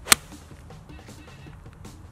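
A pitching wedge striking a golf ball on an approach shot: one sharp, crisp click just after the start, with faint background music beneath.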